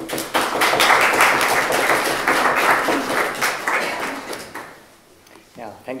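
Audience applauding, a dense patter of many hands clapping that begins just after the start and dies away about four to five seconds in.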